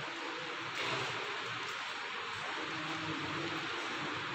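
A steady hiss of room noise that grows slightly louder about a second in, with faint low tones underneath.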